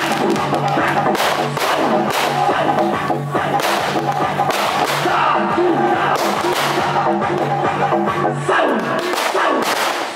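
Aerial fireworks going off, with a series of sharp bangs and crackle at irregular intervals, mixed with music whose low notes hold steady.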